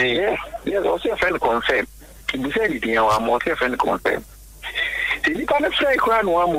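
Speech only: a person talking, with short pauses about two and four seconds in.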